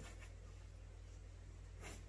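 Faint scratching of pencil graphite on sketchbook paper as strokes are drawn, with one slightly louder stroke near the end.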